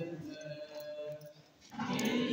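A congregation chants a hymn unaccompanied. The voices fade to a brief pause about a second and a half in, then the singing comes back louder.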